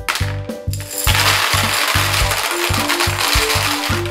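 Orange Smarties candy-coated chocolates poured from a glass into a plastic toy bathtub, a dense clattering rattle starting about a second in and running on, over background music with a steady beat.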